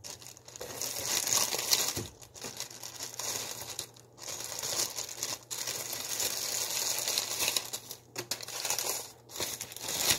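Clear plastic bread bag crinkling as hands reach into it and handle the loaf, in several bursts with short pauses between.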